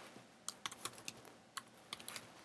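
Computer keyboard being typed: a run of faint, separate key clicks, about eight irregularly spaced keystrokes as a word is typed.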